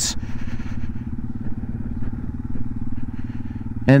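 Yamaha TW200's air-cooled single-cylinder four-stroke engine running steadily at low speed, heard from the rider's seat.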